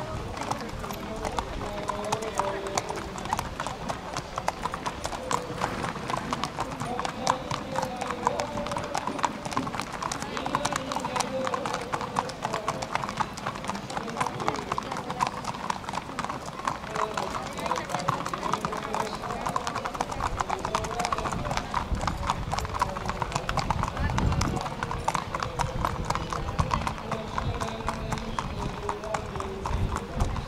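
Hooves of purebred Arabian racehorses clip-clopping at a walk on a paved path, a steady run of sharp strikes, with the murmur of crowd voices behind.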